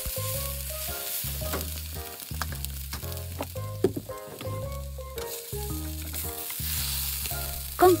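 Bean sprout and egg pancake sizzling in a frying pan as it is turned and lifted with a slotted spatula, with spatula scrapes against the pan. Background music with a steady, repeating bass line plays underneath.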